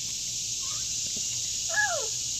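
A young child's brief high-pitched vocal sound near the end, with a pitch that rises and then falls, over a steady high hiss in the background.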